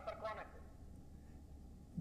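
A faint, brief snatch of a person's voice in the first half second, then only low steady background hum until speech resumes.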